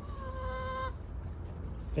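A hen giving one drawn-out call of steady pitch, lasting under a second, soon after the start.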